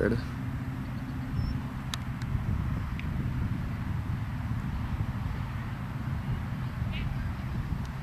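Steady low outdoor rumble with a few faint, distant clicks.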